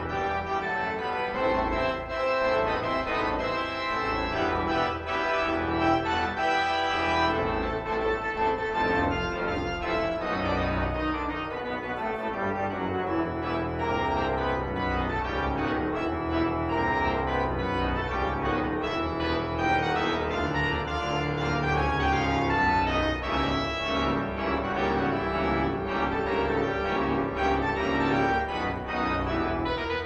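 Multi-manual organ played on keyboards and pedalboard: held chords over a pedal bass line, without a break.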